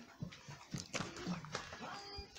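Brief animal cries with a few soft clicks in between.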